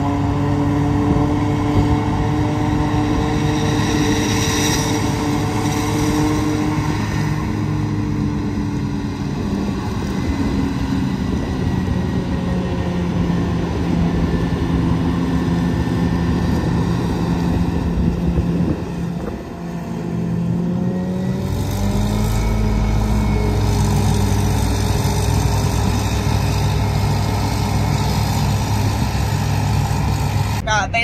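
New Holland self-propelled forage harvester running steadily under load while chopping standing corn for silage, with the silage truck running alongside. After a brief dip about two-thirds of the way through, a deeper, louder engine rumble comes in.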